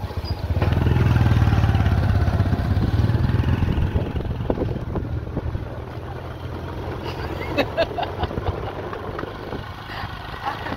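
Boda boda motorcycle taxi engine running with a steady low hum as it rides. It is loudest in the first few seconds and fades away about halfway through.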